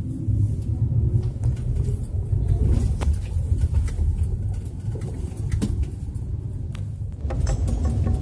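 Low rumble of a car's engine and road noise heard from inside the moving car, with a few light clicks. Music comes in near the end.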